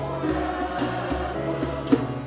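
Choir singing a hymn with keyboard accompaniment and held bass notes, while a jingling hand percussion instrument is struck about once a second, twice here.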